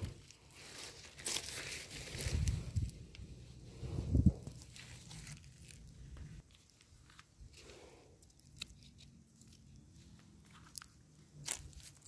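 Dry leaf litter crunching and rustling underfoot, with scattered small crackles and clicks; the busiest, loudest stretch is in the first half, then it thins to occasional crackles.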